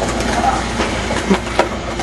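Skateboard wheels rolling on pavement: a steady rumbling roll broken by a few sharp clacks, one in the first second and several in the second half.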